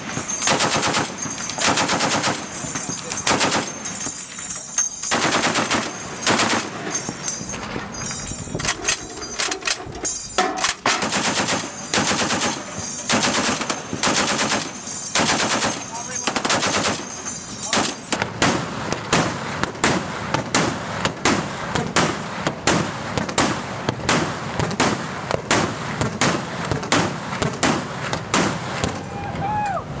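M2 .50 caliber heavy machine gun firing repeated bursts of automatic fire. In the last third the shots sound duller.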